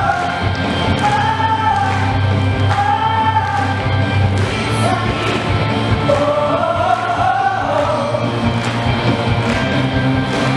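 A woman singing a melody into a microphone over amplified musical accompaniment with a steady bass and beat.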